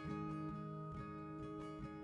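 Background music on acoustic guitar: plucked chords struck about twice a second and left to ring.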